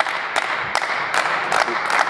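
Applause: a group of people clapping steadily.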